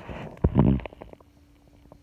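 Handling noise on a phone's microphone as the phone is moved and set in place: a few clicks and a loud, low, muffled rumble about half a second in, then quieter, with a faint steady hum from about a second in.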